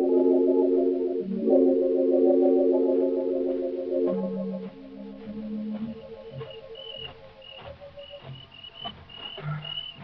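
Radio-drama music bridge of sustained organ chords with a wavering tremolo. The chord changes about a second in and drops lower at about four seconds as the music fades. From about six seconds faint high cricket chirps repeat two or three times a second as a night-time sound effect.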